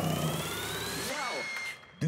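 Ring announcer's drawn-out last syllable of a fighter's name over the arena PA, ending about a second in, with a thin rising electronic tone under it that levels off and fades away.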